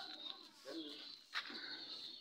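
Faint, low bird calls in a few soft, short notes, with a single sharp click about one and a half seconds in.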